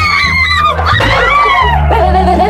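Young women screaming in fright: two long, high-pitched, wavering screams, over low background music.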